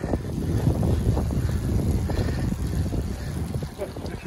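Wind buffeting the microphone of a camera riding on a road bike at speed: a steady, uneven low rumble.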